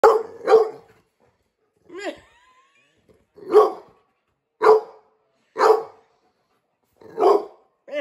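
American Bulldog barking. Two quick barks come first, then a higher, wavering bark about two seconds in, then four single barks roughly a second apart.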